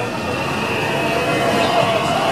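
Busy funfair din: a crowd of voices over a steady mechanical hum, with no single sound standing out.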